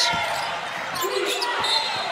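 A basketball dribbled on a hardwood court, several sharp bounces in a large, echoing arena.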